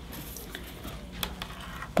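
Quiet handling sounds: a few light clicks and taps in the second half as a clear plastic grid ruler is brought in and set down over a wool felt sample on a wooden table.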